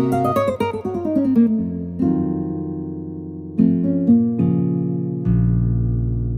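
Yamaha Montage 7 synthesizer playing a sampled acoustic guitar patch. A fast descending run of plucked notes opens it, followed by a few struck chords, and it ends on a low chord left ringing.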